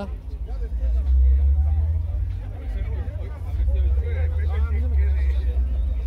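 Deep, steady bass from a car sound system playing, with people talking faintly in the background.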